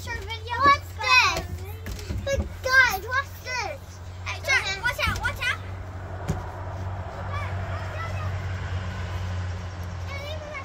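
Children's voices calling out, high and sliding in pitch, for about the first five seconds. After that a steady low hum and a hiss of background noise remain, with a single click about six seconds in.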